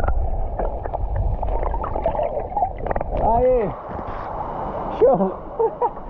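Water sloshing and gurgling around a camera moved under and through the water of a stream pool. It is heard as a deep, muffled rumbling for the first half, then bubbling.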